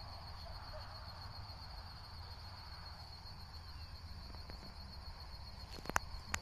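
Crickets chirring in one steady high-pitched drone over a low rumble, with a single sharp click just before the end.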